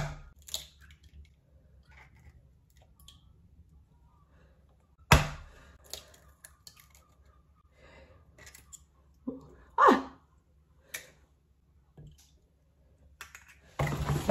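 Eggs being cracked and separated over a glass bowl: a sharp crack of shell about five seconds in and another loud knock about ten seconds in, with a few lighter shell clicks and taps between quiet stretches.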